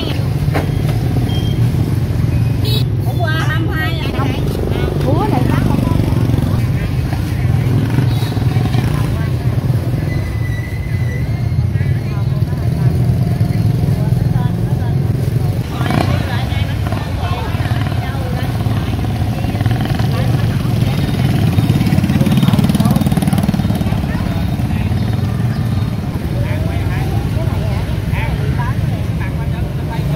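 Busy street-market ambience: motorbike engines running past on the road under steady background chatter of voices.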